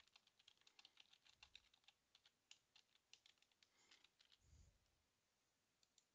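Faint typing on a computer keyboard: a quick run of key clicks for about three and a half seconds, then a soft low thump.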